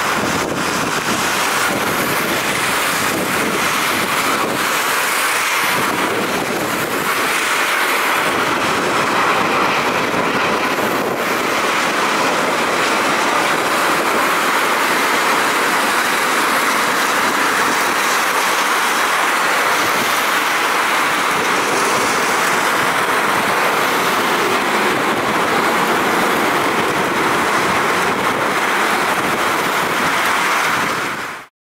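Airbus A350-900 airliner with Rolls-Royce Trent XWB engines landing on a wet runway in heavy rain: a steady, loud rushing of jet engine noise and rain, holding level throughout.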